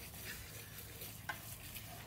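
Hands rubbing salt and pepper into the scored skin of a raw pork belly: a steady gritty scraping of palms and grains on the rind, with one sharper scratch about a second and a quarter in.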